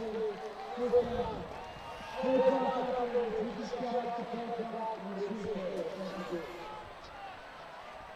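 Faint, indistinct voices at a distance with no clear words, over a low steady background hiss. The voices are loudest a couple of seconds in.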